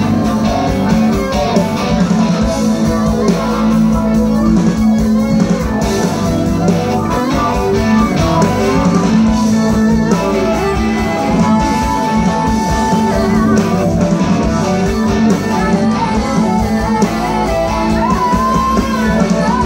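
A live rock band playing through a PA system: electric guitars over bass, drums and keyboards, with a steady beat and no break.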